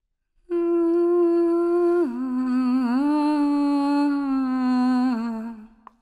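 A woman's voice humming a slow, wordless tune in long held notes. It starts about half a second in, steps down in pitch about two seconds in, wavers and rises a little, then drops again and fades out just before the end.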